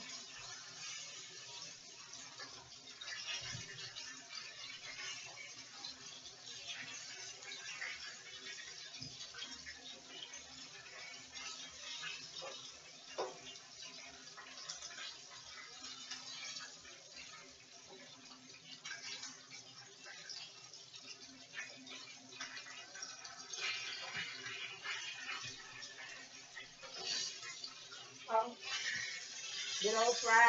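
Chicken frying in oil in a skillet: a steady sizzle with scattered crackles and pops.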